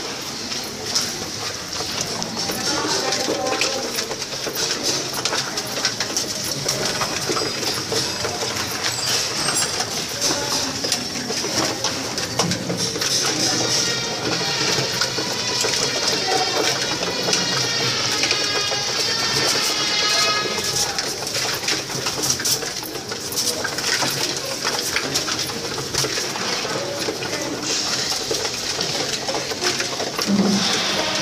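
A flock of domestic pigeons cooing while they feed, with many short clicks and wing flutters as they peck and jostle around a feeder.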